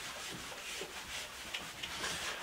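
A whiteboard eraser rubbing back and forth across a whiteboard, a run of soft wiping strokes as writing is erased.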